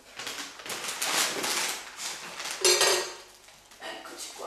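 Kitchenware clattering and scraping as a bowl and plate are handled beside a dough trough, in a string of short rustling knocks, loudest about three seconds in.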